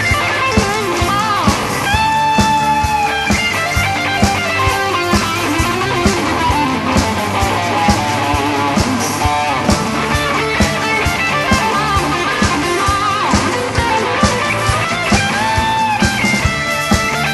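Rock band playing: electric guitars over drums and keyboards, with long held notes that bend in pitch.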